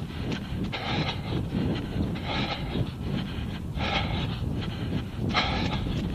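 A runner's hard, rhythmic breathing at a strong effort, a loud breath about every second and a half, four in all, over a steady low rumble.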